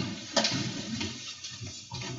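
Several people getting up from chairs behind a row of wooden desks: chairs shifting, footsteps and clothing rustle, with a sharp knock about a third of a second in.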